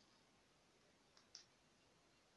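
Near silence with two faint clicks close together a little past the middle: knitting needles tapping as stitches are worked.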